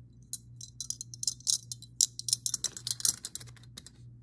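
Metal binder clips clicking and clinking against each other and the pens as they are handled and put down in a pencil case: a rapid, irregular run of small sharp clicks.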